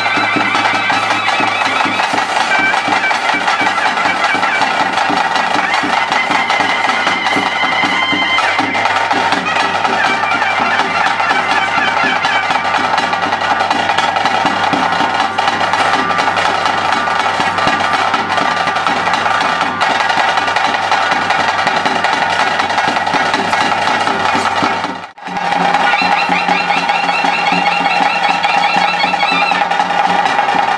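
Ritual music for a bhuta kola: a shrill reed wind instrument plays a wavering melody over steady drumming. The music briefly drops out about 25 seconds in, then resumes.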